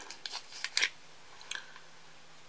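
A few light clicks and taps from fingers and nails handling a glass nail polish bottle, mostly in the first second, then only a faint steady low hum.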